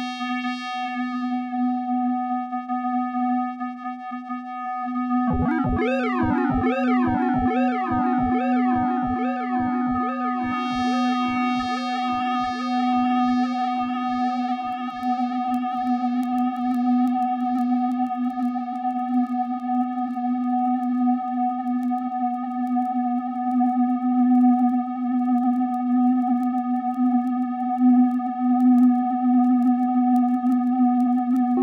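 Homemade digital modular synthesizer (a JavaScript soft synth) holding a steady buzzy square-wave drone with a higher steady tone above it. About five seconds in, a falling filter sweep begins and repeats about twice a second through the delay, the echoes fading away over some ten seconds while the drone carries on.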